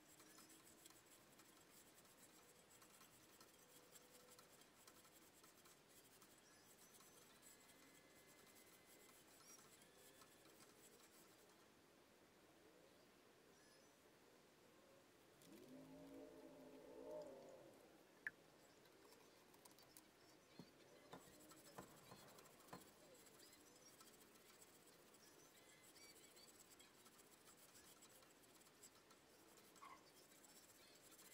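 Faint rubbing and scratching of a cloth wiping down a woofer's frame, cleaning it for a recone. About halfway there is a brief pitched sound, then a few light clicks.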